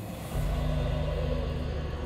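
Background film score: a low, sustained chord comes in about a third of a second in and holds steady.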